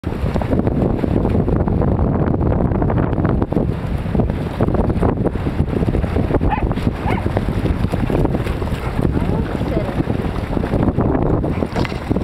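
Heavy wind rumble on the microphone over splashing as a pack of dogs runs and wades through shallow sea water, with a dog barking a few times in the middle.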